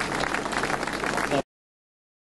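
Audience applauding, cut off suddenly about a second and a half in.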